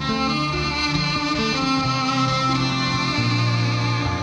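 Cellos bowed together in live music, several long held notes layered on top of each other.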